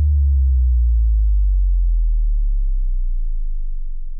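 Deep synthesized bass tone of an outro sting, slowly sinking in pitch and fading away.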